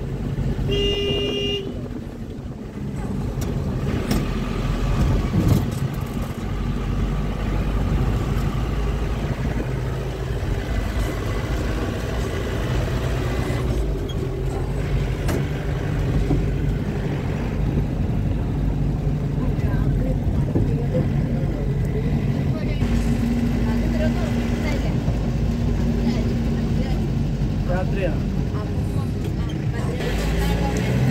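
Steady engine and road noise heard from inside a moving vehicle, with a short vehicle horn toot about a second in.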